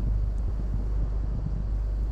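A boat's engine running steadily, a low drone, with wind noise on the microphone.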